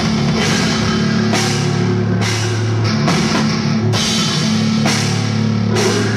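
A heavy metal band playing live: distorted guitars hold low chords that change about once a second, over a pounding drum kit with cymbals.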